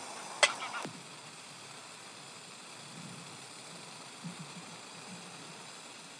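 A sharp metallic clink about half a second in, then a few lighter clicks, as the cooking pot on a small gas-canister camping stove is handled. Behind it runs the steady rushing hiss of the stove's burner.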